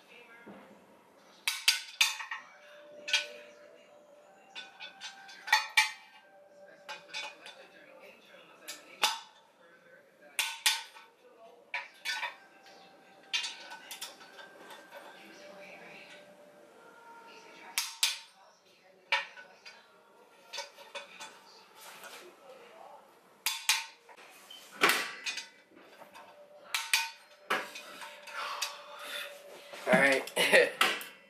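Socket wrench and torque wrench working the assembly bolts of a three-piece aluminium wheel, torquing them down: an irregular run of sharp metallic clicks and clinks, each ringing briefly.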